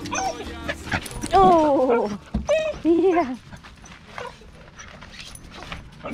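A dog whining in two drawn-out cries: a long falling one about a second and a half in, then a shorter one near three seconds.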